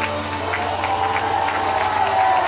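Live band music from an outdoor concert sound system, with a held note sustaining as the audience claps and cheers.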